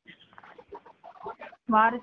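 A person's voice speaking: faint and broken at first, then loud, emphatic speech from near the end.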